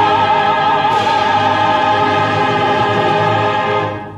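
Large mixed choir holding the final chord of a Soviet song, the top voices' vibrato strong. The sound brightens about a second in, then the chord is cut off near the end, leaving a short reverberant decay.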